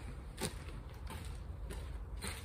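Quiet handling noises from someone walking over and taking hold of a fabric car cover: faint shuffles, with a sharp click about half a second in.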